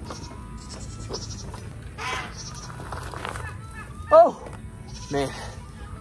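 A goat bleats once, loudly, about four seconds in, its call falling in pitch, with a fainter call about two seconds in.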